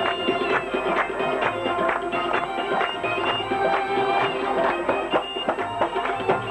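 Live ghazal music: a harmonium sounding held reedy notes over quick tabla strokes, with a male voice singing.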